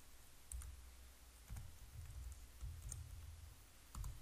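A few faint, sparse computer keyboard keystrokes, each a sharp click with a soft low thud, spread irregularly across a few seconds.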